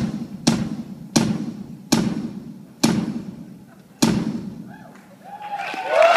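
Live drum kit during a drum solo: six heavy single hits, each ringing out in the hall, coming further and further apart as the solo slows. Near the end a swell of crowd shouts and whistles rises.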